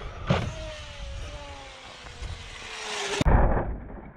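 Traxxas XRT 8S electric RC truck's motor and geared drivetrain whining, the pitch falling slowly as it coasts, with a knock a moment after the start. Near the end comes a heavy thump as the truck lands nose-first close by.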